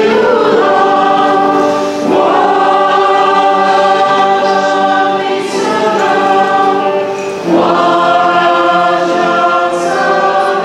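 A group of voices singing a liturgical hymn in long, held notes, with short breaks for new phrases about two seconds in and again past seven seconds.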